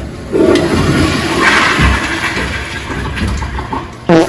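A toilet flushing: a loud rush of water that starts just after the beginning, peaks about halfway through and dies away toward the end.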